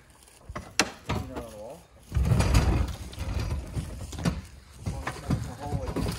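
A heavy quad ATV being pushed by hand across an enclosed trailer's metal floor on a wheeled jack: a sharp click about a second in, then a loud rolling rumble about two seconds in, followed by scattered knocks. Brief voices come in between.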